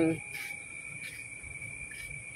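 Night insects trilling steadily at one high pitch, picked up by a phone's microphone. The last sound of a spoken word comes right at the start.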